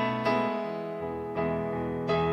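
Slow, meditative piano music: sustained chords struck one after another, each new chord ringing out and slowly fading.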